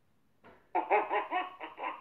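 A person laughing in a quick, even run of short bursts, starting under a second in, with a thin, phone-like sound.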